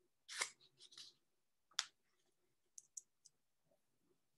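A few faint, short clicks and rustles close to the microphone, about five in all, the first and the one near the middle the loudest.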